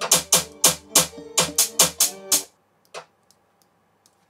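A guitar drill beat playing back from a production program: a fast, syncopated pattern of sharp percussion hits over a sustained melodic guitar loop. Playback stops suddenly about two and a half seconds in, followed by a few faint clicks.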